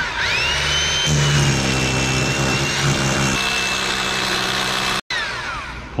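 Hilti rotary hammer drill with a long bit boring into very hard masonry. The motor whines up to speed, runs steadily under load, then winds down with a falling whine near the end.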